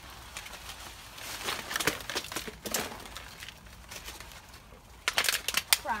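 Leaves and branches of a broad-leaved tree rustling and snapping as someone climbs through it, in scattered bursts, with a louder spell of rustling about five seconds in.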